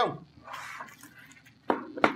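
Brief rustling of people shifting in office chairs and handling paper and loose plastic LEGO pieces, then a sharp short clack near the end.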